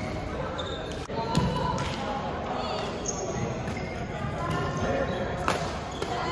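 Badminton rally in a reverberant gym: racket strings striking the shuttlecock in sharp hits, the clearest about five and a half seconds in, with short squeaks of sneakers on the court floor.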